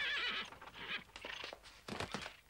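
A horse whinnies briefly with a wavering call at the start, followed by a few scattered hoof clops.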